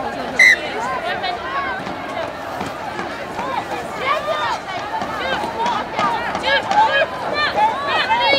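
Rugby players' voices shouting and calling to one another on an open pitch. The calls overlap and grow busier in the second half, over a low crowd murmur. A brief shrill note sounds about half a second in.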